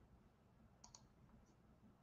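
Near silence: room tone with a close pair of faint clicks just under a second in and a weaker click about half a second later.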